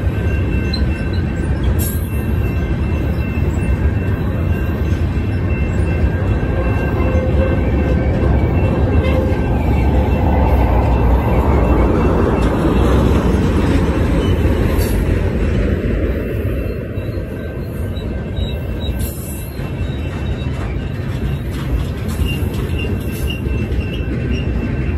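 Freight cars rolling past close by: a loud, steady rumble of steel wheels on rail, with faint high steady squeal tones from the wheels and a few sharp clanks.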